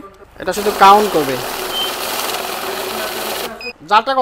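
Electric banknote counting machine running a stack of taka notes through its rollers: a steady fast rush of notes feeding through, starting about half a second in and cutting off suddenly about three seconds later as the count finishes.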